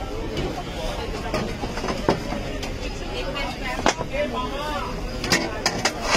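Aluminium momo steamer trays clinking sharply as they are handled, a few separate clinks followed by a quick cluster near the end, over background chatter and a steady traffic hum.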